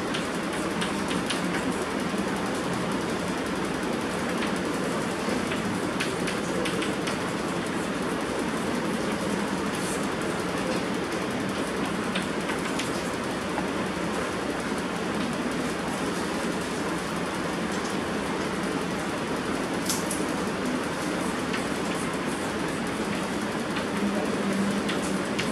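Steady rushing background noise in a room, with a few faint clicks and taps of chalk writing on a blackboard.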